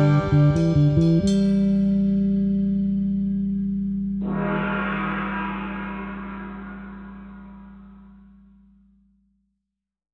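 The ending of a rock song: after a last busy second the band lands on one held chord that rings on and slowly fades out. About four seconds in, a hissing wash like a cymbal or effect swells in on top, and it fades away with the chord.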